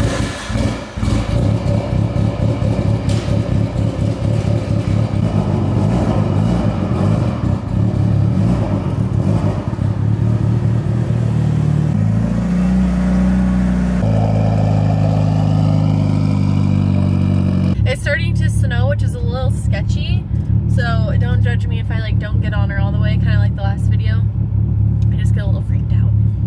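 Mitsubishi Lancer Evolution VIII's turbocharged 4G63 inline-four running at a fast idle just after a cold start, a steady engine drone that shifts in tone about twelve and eighteen seconds in.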